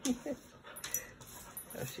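Two dogs play-fighting, with faint dog sounds and a few sharp clicks about a second in. A woman's laughter trails off in the first half-second.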